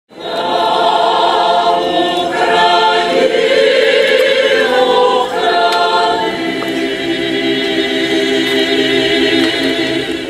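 Transcarpathian folk choir singing unaccompanied in full chords with vibrato, settling onto one long held chord over the last few seconds.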